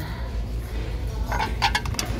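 Ceramic dishes clinking together several times in quick succession, about a second and a half in, as a divided serving dish is lifted off a stack of plates, over a steady low hum.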